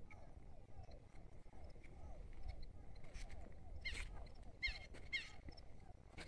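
Faint chorus of frogs calling, many quick repeated croaks overlapping, with a few sharper high chirps about four seconds in and again near five, over a low rumble.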